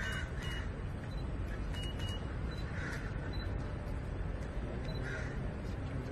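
Outdoor crowd-and-traffic ambience around a parked SUV: a steady low rumble, with a few short cries scattered through it and two pairs of short high beeps in the first two seconds.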